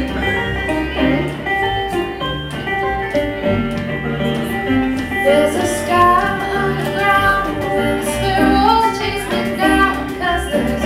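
A live folk band playing: guitar and upright bass over light drums, with women's voices singing in close harmony from about five seconds in.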